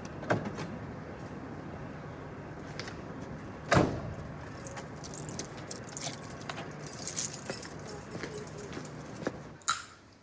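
A Jeep Cherokee's door shuts with a single thud about four seconds in, followed by a loose jingling of keys.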